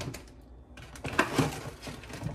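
A few light clinks and knocks from a glass olive oil bottle being picked up and handled on a kitchen counter, mostly in the second half.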